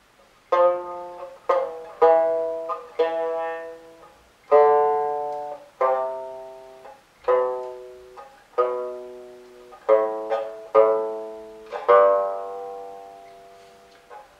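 Shudraga, the Mongolian three-stringed plucked lute, played as single plucked notes at a few different finger positions. There are about a dozen notes, each struck sharply and left to ring out and fade.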